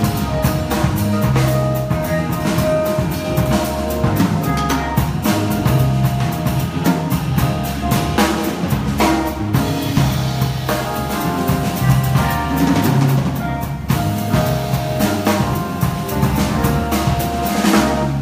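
Live jazz trio playing: electric bass, Yamaha keyboard and a drum kit, with busy drums and cymbals over sustained bass notes and keyboard chords.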